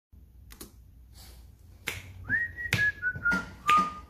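A person whistles a short tune that steps down in pitch, snapping their fingers on the beat. The snaps start a little before the whistling, about two seconds in.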